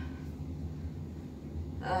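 A low steady background hum fills a pause in speech, with a woman's brief "um" near the end.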